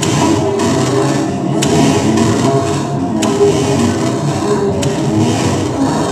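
Live electronic music played on synthesizers and effects gear: a dense, continuous mass of layered tones, with a sharp click about every second and a half.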